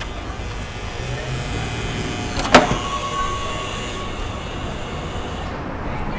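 A truck's engine rumbling steadily. About two and a half seconds in there is a single sharp clack, followed by a brief thin high whine.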